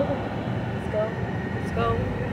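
Steady road and engine noise inside a moving car's cabin, with a short voice sound about a second in and speech starting near the end.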